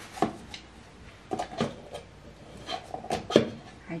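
Irregular clicks and knocks of a glittered bell ornament being handled as its metal cap and hanger are worked loose by hand, the sharpest knock a little before the end.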